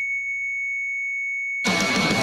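A steady high-pitched electronic tone from a hospital patient monitor, held unbroken for about a second and a half like a flatline alarm. Loud music then cuts in over it.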